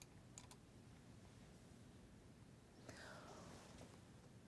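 Near silence: room tone, with a couple of faint clicks about half a second in and a soft hiss near the end.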